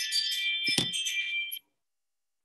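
A jingling, bell-like chime of many high tones, cutting off suddenly about one and a half seconds in, with a dull thump in the middle of it. The chime repeats about every four seconds.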